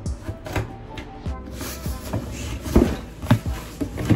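Cardboard shipping box being handled and opened: scattered knocks, scrapes and rustles of the cardboard, the loudest knocks about three seconds in, over soft background music.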